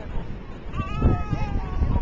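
A toddler's wavering, high-pitched vocalising, a short whine-like call about a second long near the middle, over low wind rumble on the microphone.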